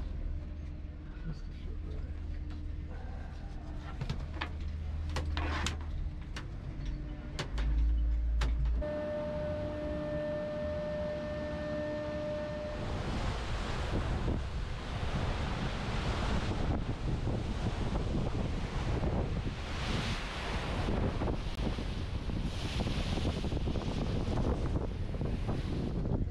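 Cable car gondola running into its station: a low rumble with a steady hum and several sharp clanks, then a steady pitched tone for a few seconds. After that comes wind buffeting the microphone over the rush of the sea from a ship's deck.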